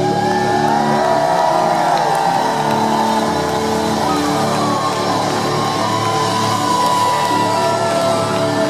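A symphonic metal band playing live through a loud PA, with held, wavering lead lines that bend in pitch over sustained chords, bass and drums.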